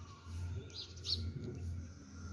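A bird chirping, a few short high calls about a second in, over a steady low hum.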